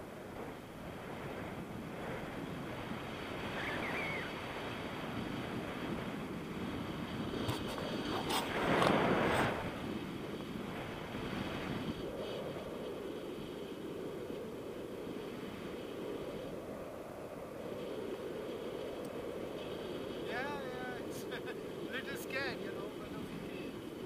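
Wind rushing over the camera microphone in flight under a tandem paraglider, steady, with a louder gust about nine seconds in. A voice comes in near the end.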